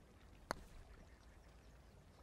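A single sharp click of a putter striking a golf ball, about half a second in; otherwise near silence.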